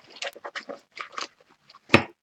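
A pencil pouch and its contents being handled: a run of small rustles and clicks, with one sharp knock just before the end.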